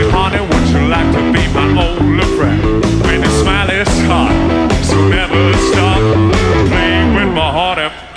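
Rock band playing live: electric guitar over bass guitar and a steady drum beat.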